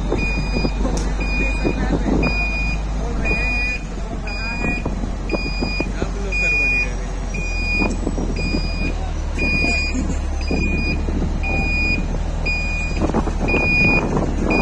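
Reversing alarm of a large water tanker truck, a single high beep repeating steadily about three times every two seconds, over the truck's heavy engine running low. The engine rumble grows fuller about halfway through as the truck backs up.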